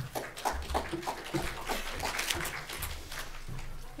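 Small audience applauding, scattered clapping.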